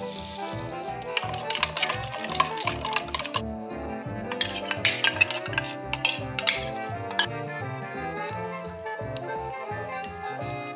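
Background music with a steady beat, over which a metal spoon clinks and scrapes against a glass measuring jug and steel bowl in two bouts during the first seven seconds, as a mayonnaise-and-sesame dressing is stirred and spooned out.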